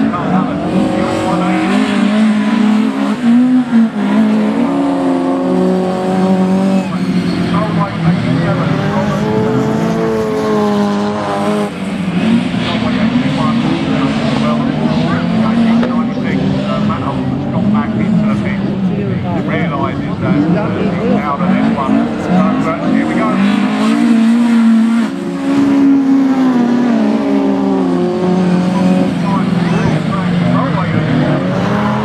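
Several autograss racing cars' engines revving hard together, the pitch climbing and dropping over and over as they accelerate, lift off and change gear.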